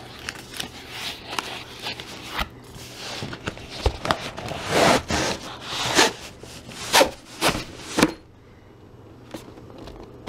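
Cardboard box packaging being handled and searched through: rustling and scraping with scattered clicks, building to several sharp knocks and taps. The handling stops about eight seconds in, leaving a faint hum.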